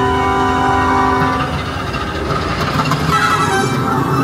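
A long sustained chord from the dark ride's soundtrack music dies away about a second and a half in. It leaves the steady low rumble of the moving ride vehicle, with a rougher clatter near the end.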